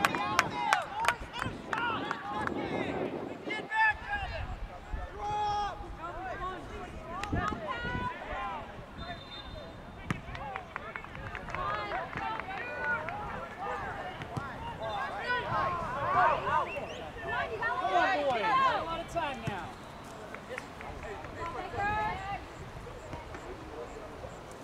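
Indistinct shouts and calls from several voices on and around a soccer field, overlapping throughout, with a quick run of sharp taps near the start.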